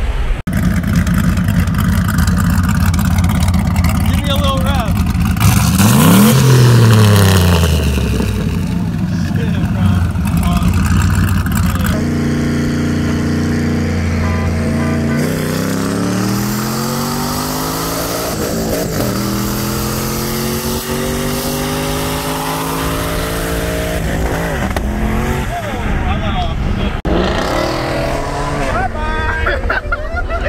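Car engines at full throttle in roll races, heard from inside the cabin with road and wind noise. The engine note falls once a few seconds in. After a change partway through, it holds steady and then climbs in pitch for several seconds as the car revs out. Voices are heard near the end.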